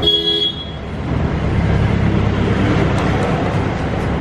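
A short horn toot, pitched and bright, for about the first half second, over a steady low rumble of vehicle noise that continues.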